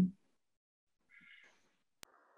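Near silence on a video call, with one faint, brief pitched sound about a second in.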